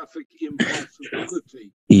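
Speech only: a man talking at moderate level in short broken phrases. A louder voice comes in at the very end.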